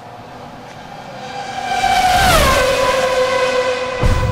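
An outro sound effect of several tones sounding together. It grows louder from about a second in, slides down in pitch a little over two seconds in, then holds steady.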